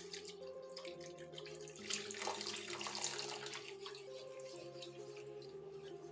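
Hot milk pouring faintly from a measuring jug into thickening béchamel sauce in a frying pan, stirred with a silicone whisk.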